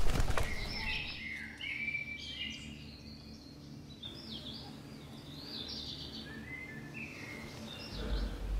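Forest birds chirping and calling, with many short up-and-down whistled notes through the whole stretch, over a faint steady low hum. A brief loud rustle comes right at the start.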